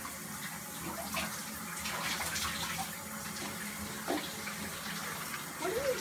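Shower running steadily, water spraying into the tub with scattered splatters. A voice starts just before the end.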